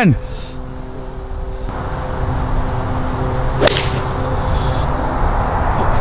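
An iron club strikes a golf ball once, a single sharp click about three and a half seconds in, over wind noise on the microphone.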